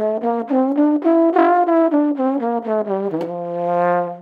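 Trombone playing a one-octave concert F major scale as a warm-up, short separate notes climbing to the top and coming back down, ending on a longer held low note near the end.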